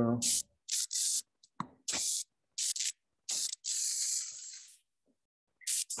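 Stylus pen scribbling on a touchscreen, a series of short scratchy strokes with one longer stroke in the middle, as the pen is tested to see whether it will write.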